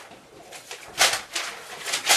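Loose sheets of paper being flung into the air, making short flapping swishes. The loudest comes about a second in, with another near the end.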